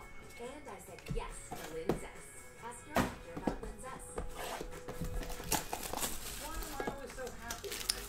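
Background music with faint voices under it, and the clicks and rustles of a cardboard trading-card box being handled and opened by hand: a few sharp knocks, the clearest about three seconds in.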